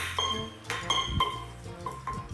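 A small metal object clinking and knocking irregularly on a concrete floor as a rat drags it, over background music.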